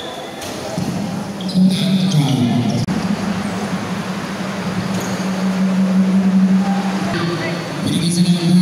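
Basketball bouncing on the court with players' and spectators' voices in a large gym, over a steady low hum. There is one sharp knock about three seconds in.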